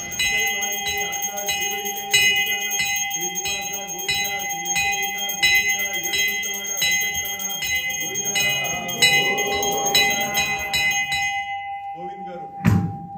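A puja hand bell rung continuously with quick, evenly repeated strikes during temple worship, its ringing cutting off suddenly about a second before the end.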